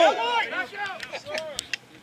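Several voices shouting and calling out across the rugby pitch, overlapping, with a few sharp clicks about three-quarters of the way through.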